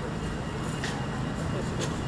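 Steady low rumble of outdoor city background noise, with a couple of faint clicks.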